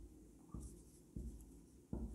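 Marker pen writing on a whiteboard: faint, short strokes, three of them spread over two seconds.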